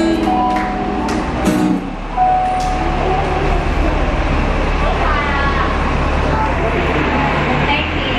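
People talking in a pause between songs, over a low steady rumble that sets in about two seconds in.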